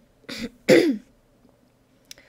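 A woman clearing her throat: a short breathy burst, then a louder voiced one that falls in pitch, both within the first second.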